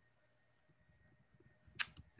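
Near silence in a pause between sentences, broken once near the end by a brief sharp sound, such as a quick breath or a click.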